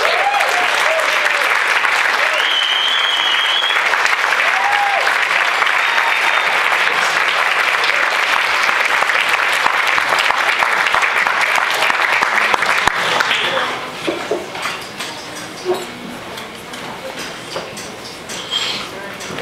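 Small club audience applauding and cheering a live band, with whoops and a high whistle a few seconds in. The clapping stops about three-quarters of the way through, leaving scattered claps and voices.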